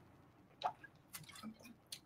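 Faint mouth and liquid sounds of a man sipping from a cup and swallowing: a few soft, brief smacks and clicks, one a little over half a second in and several more in the second half.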